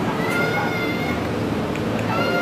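A high-pitched, drawn-out wailing cry, held for about a second and falling slightly in pitch.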